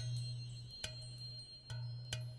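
Ambient meditation music: a steady low drone under bright, bell-like chime notes struck about once a second, each ringing out.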